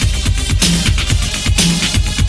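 Miami freestyle dance music: an electronic drum beat and bass with a steady, driving pulse and a bright crash-like hit about once a second.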